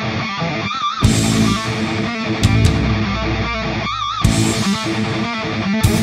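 Instrumental rock music: an electric guitar riff over bass, with a wavering, bent high note twice. Near the end the band comes in fuller and harder, with drums hitting.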